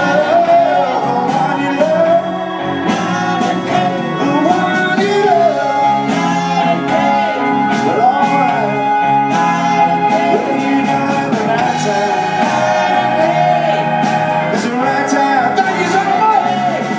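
Live blues band playing electric guitar, electric keyboard, bass and drums, with a lead line sung over it that bends and slides in pitch.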